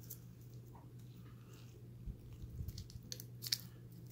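Faint handling noise of nitrile-gloved hands working right next to the microphone while pulling and handling a BIOS chip. It is rustling and brushing with a few small clicks, mostly in the second half, over a steady low hum.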